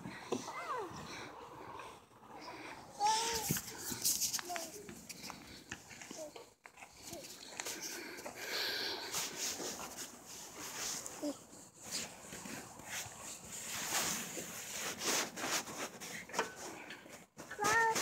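A toddler's brief, scattered vocal sounds, a few short calls now and then, over low rustling and handling noise.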